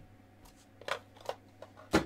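Thick trading cards being handled and set down on a table mat: a few short, sharp clicks and taps, the loudest at the very end.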